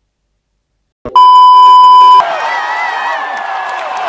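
After about a second of silence, a loud steady beep tone, a single pitch near 1 kHz like a censor bleep, lasts about a second and cuts off abruptly. Live concert crowd noise with cheering follows.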